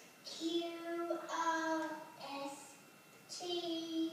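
A four-year-old boy singing in a small, high voice: about four short phrases of held notes, with brief pauses between them.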